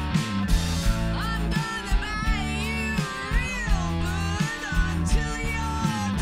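Live rock band playing: electric guitar, bass guitar and drums with regular drum hits, and a woman singing lead from about a second in, her voice bending between notes.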